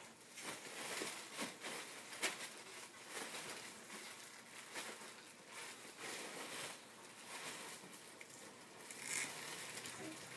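Faint, irregular rustling and scuffing of plastic-bagged clothing and the cardboard box as hands rummage through it.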